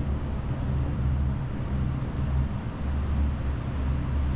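Electric fan running: a steady low hum with an even hiss over it.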